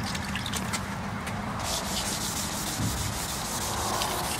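Hand wet sanding of a fiberglass boat's gel coat with wet 600-grit wet/dry sandpaper: a steady gritty rubbing of back-and-forth strokes that settles in about a second and a half in. The coarse 600 grit is cutting through heavy oxidation on the gel coat.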